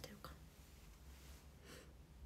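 Near silence: faint low room hum, with the last syllable of a woman's speech at the very start and a short soft hiss near the end.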